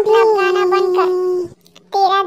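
A cartoon character's voice holding one long drawn-out note, dipping slightly in pitch just after it starts, then breaking off after about a second and a half.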